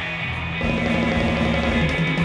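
Live rockabilly band playing an instrumental passage: electric guitar, upright bass and drum kit.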